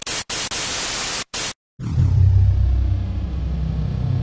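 A hiss of static-like white noise, cut out twice for an instant, that stops about one and a half seconds in. After a brief silence a low, steady rumble begins.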